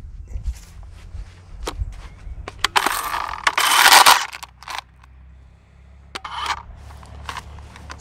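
WORX 40V battery chainsaw cutting into a clump of thin, dry brush stems, with scattered snaps and clicks of twigs and a loud burst of cutting and crushing about three to four seconds in. The owner finds the saw struggles with such thin brush, which knocks its chain off the bar.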